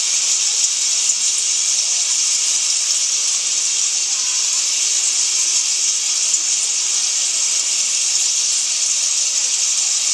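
A steady, loud rain-like hiss: a rain sound effect opening the backing track for an umbrella dance.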